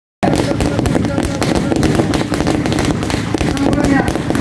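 A string of firecrackers going off in rapid succession: many sharp bangs a second, running on without a break.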